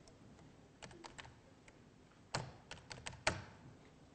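Computer keyboard keys tapped in irregular clusters of sharp clicks, a few faint ones about a second in and several louder ones in the second half.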